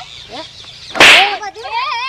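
A single sharp, very loud whip-like crack about a second in: a stick striking a person.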